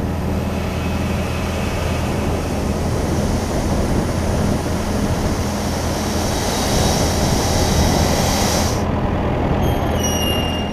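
Granular fertilizer pouring into a spreader hopper, a dense steady hiss of falling granules that stops abruptly about nine seconds in as the load is finished, over the steady hum of an engine running. A brief high-pitched squeal follows near the end.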